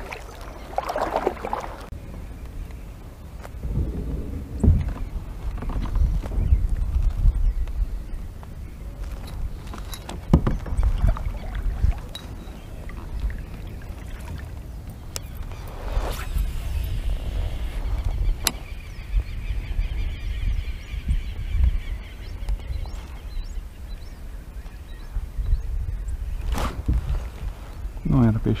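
Paddling and handling gear in a sit-on-top fishing kayak: paddle strokes in the water and knocks against the plastic hull over a low, uneven rumble, with a few sharp clicks.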